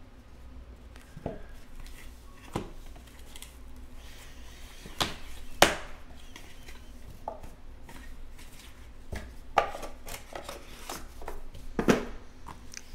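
Handling of a cardboard trading-card box and plastic card holders: the lid is lifted off and cards in clear plastic cases are taken out and set down on a table, giving about nine scattered light taps and knocks, the sharpest a little past halfway.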